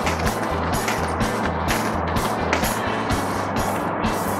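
Background music with a steady beat and a stepping bass line, under a dense noisy wash.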